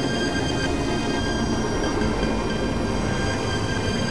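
Experimental electronic noise drone from synthesizers: a steady, dense rumble with several thin, high tones held unchanging above it, with no beat.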